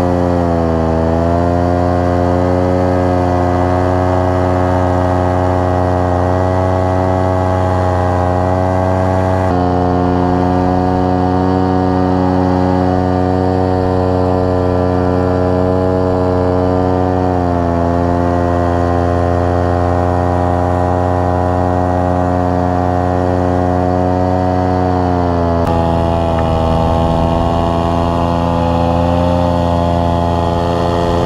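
Paramotor engine and propeller running steadily at flying power. The engine note sags and recovers a couple of times as the throttle is eased, and the sound jumps abruptly at a few points.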